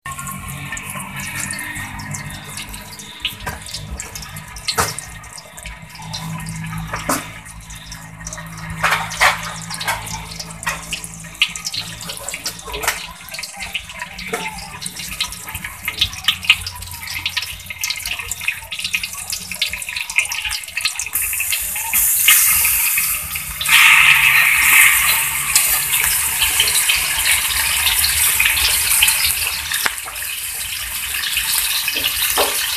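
Cooking oil heating in a wok, crackling with many scattered sharp pops. About 21 seconds in, sliced raw meat goes into the hot oil and a loud, steady sizzle takes over, growing louder again a few seconds later.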